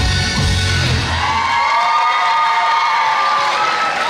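Amplified trot dance music with a heavy bass beat stops about a second in, followed by cheering with one long, high whoop.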